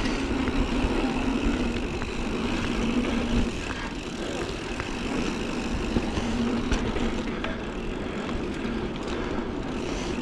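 Mountain bike rolling over hardpacked dirt: the knobby tyres give a steady drone that comes and goes, over low wind rumble on the microphone, with a few light rattles from the bike.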